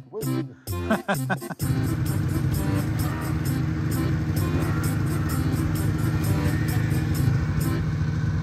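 Yamaha Phazer snowmobile engine running steadily as the sled drives off, starting suddenly about a second and a half in, under background music with a steady beat. Brief laughter comes before it.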